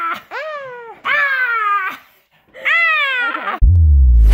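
Domestic tabby cat meowing three times, each a drawn-out call that falls in pitch. Electronic music with a heavy bass starts loudly near the end.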